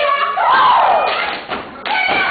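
Step team stomping in unison on a stage, giving a few sharp thuds near the start and another just before the end. A long shout rises and falls in pitch about half a second in, with audience voices around it.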